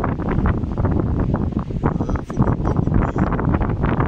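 Wind buffeting the microphone: a loud, gusty low rumble with irregular flutter.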